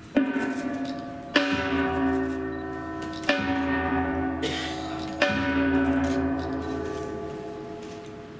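A ritual bell struck four times, about every two seconds, each stroke ringing on with a rich set of overtones and fading slowly into the next.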